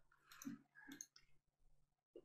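Near silence with a couple of faint clicks about half a second and a second in, from a computer mouse clicking.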